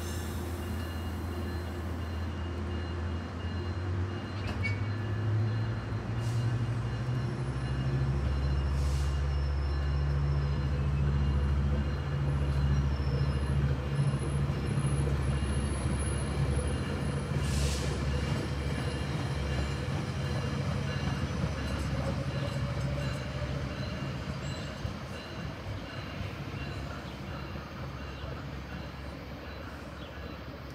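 Metrolink commuter train going by, with the diesel locomotive's engine note climbing over the first ten seconds as it works under power, loudest near the middle, then fading as the train moves off. The rumble of the bi-level cars on the rails runs underneath.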